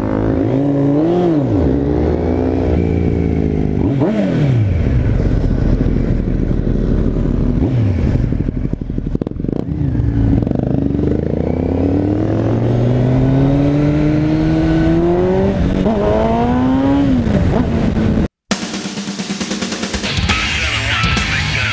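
Sport motorcycle engine accelerating away, its revs climbing and dropping several times through the gear changes. About eighteen seconds in it cuts off abruptly and rock music starts.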